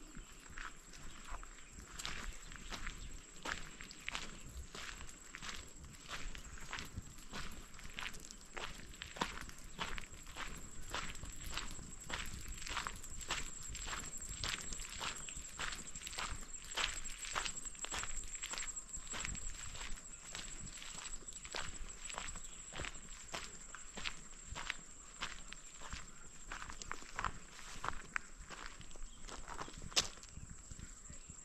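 Footsteps of a person walking at a steady pace on a dirt path, about two steps a second, over a steady high-pitched whine.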